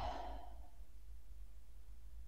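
A person's audible deep breath, a soft sigh in the first half second that fades away, taken on the cue to breathe. A faint low hum continues underneath.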